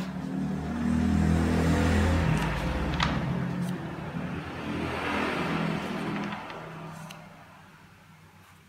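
A passing motor vehicle: an engine hum that swells over the first second or so, holds, and fades away near the end. A notebook page is turned with a short crisp rustle about three seconds in.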